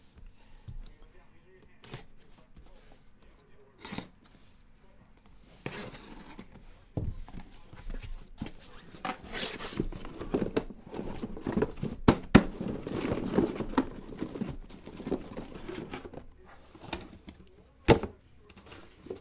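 A cardboard shipping case being opened and unpacked: tearing and crinkling of tape and cardboard, with scattered knocks and scrapes as the boxes are handled, busiest in the middle. A single sharp knock comes near the end.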